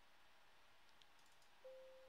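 Near silence: room tone with a single faint computer-mouse click about a second in, and a brief faint hum near the end.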